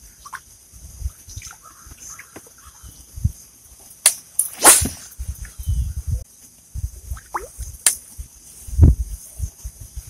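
Topwater fishing lure being worked back across the water surface: a few sharp pops and splashes, the loudest about halfway through, with some low knocks in between.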